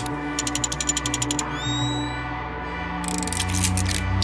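Film soundtrack: a low droning score with rapid mechanical clicking, about ten clicks a second, for the first second and a half. A few short rising whistle-like tones follow, and another run of clicking comes near the end.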